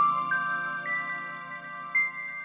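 Channel logo jingle: bell-like chime notes stepping upward one after another over a held low synth chord.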